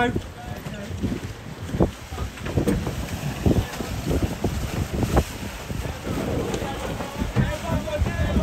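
Wind buffeting the microphone over the rush and slap of water against a boat's hull on choppy water, an uneven low rumble broken by short splashes.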